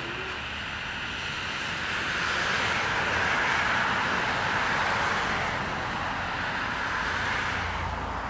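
Road traffic noise: a steady rush of passing vehicles that swells a few seconds in and then slowly eases.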